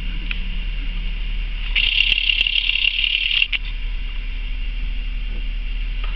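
Steady low hum inside the cabin of a 2003 Chevy Impala with the engine idling. A high hissing band rises for about two seconds in the middle, with a few small clicks.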